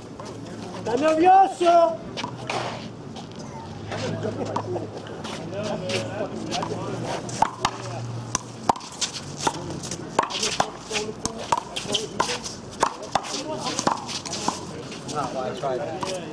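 One-wall handball rally: the ball smacks sharply and irregularly off players' hands and the wall, with the strikes coming thick from about halfway through. A man's voice calls out briefly about a second in.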